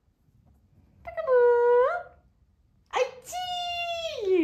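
Amazon parrot giving two long, steady-pitched calls: the first, about a second long, starts about a second in and lifts at its end; the second starts abruptly near the end and is held.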